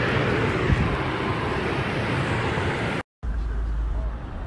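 Wind blowing across a phone's microphone outdoors: a loud, even rush, then after a brief dropout about three seconds in, a deep rumbling buffet.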